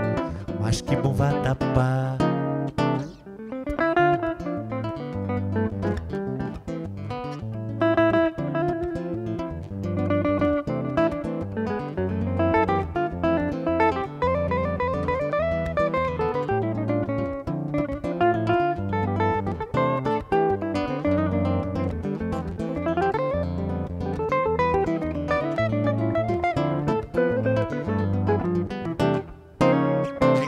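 Instrumental guitar break in a samba: a hollow-body archtop electric guitar and an acoustic guitar playing together. Single-note melody lines run up and down over the chords.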